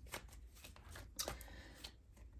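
A deck of tarot cards being shuffled by hand: faint scattered clicks of the cards and a brief soft rustle a little past the middle.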